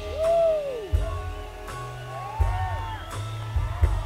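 Live rock band playing a slow passage: heavy bass notes and a drum hit about every second and a half, under held keyboard tones. Over these, swooping notes rise and fall in pitch, the longest in the first second.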